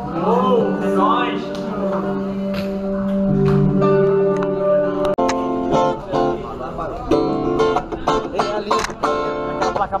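Live electric guitar music: long held, sliding notes, then after a sudden break about halfway through, a run of quick picked notes.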